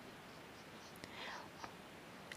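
Near silence: faint steady hiss, with a soft breath about a second in and a couple of small clicks.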